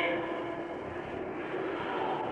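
A pause in a man's speech filled by steady, even background noise of an old recording, the tail of his last word fading at the very start.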